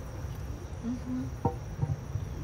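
Insects keep up a continuous high-pitched trill over a low outdoor rumble, with two brief knocks near the end.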